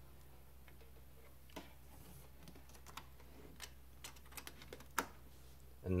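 Faint scattered clicks and light handling noises of a USB cable being worked into place and plugged into a laptop's port, the sharpest click about five seconds in, over a low steady hum.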